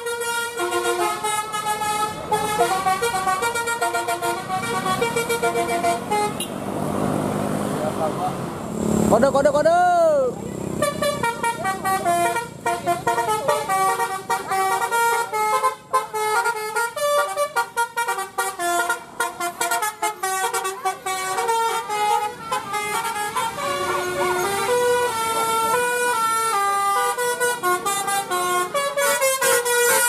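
Multi-tone telolet bus horns playing quick melodic tunes, note after note, as buses pass. Around seven seconds in the tunes give way to a rushing noise with a whooping pitch that rises and falls near ten seconds, then the horn melodies resume.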